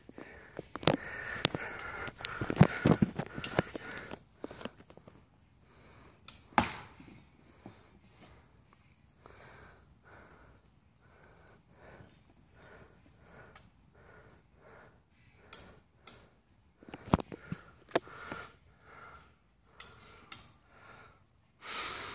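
Heavy steel hand tool striking and breaking a concrete slab, a handful of sharp blows scattered through, the loudest a few seconds in. Between the blows, rapid breathing close to the microphone.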